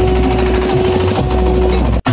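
Loud music with a heavy bass and a long held note, played over a DJ sound system's loudspeakers; it cuts off abruptly at the end.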